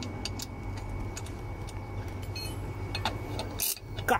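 Scattered light clicks and taps of a steel spanner being handled at an electric scooter's rear axle nut, one sharper click near the end, over a steady low background hum.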